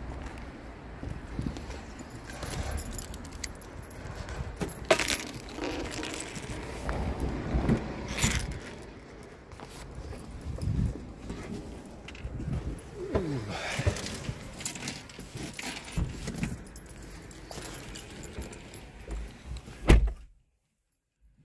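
Keys jangling and camera handling noise while walking, with a low rumble of wind on the microphone and scattered sharp clicks. A loud knock comes right at the end.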